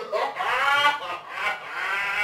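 A man laughing heartily in two long bursts, the pitch of his voice sliding up and down through each.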